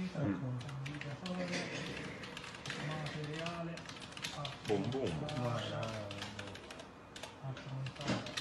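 Men talking, mostly a man's voice, overlaid with frequent sharp, irregular clicks.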